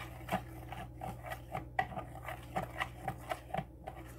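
Metal fork stirring melted clear melt-and-pour soap base in a plastic measuring cup, its tines tapping and scraping against the cup in light, irregular clicks, a few each second, as small clumps are worked out of the base.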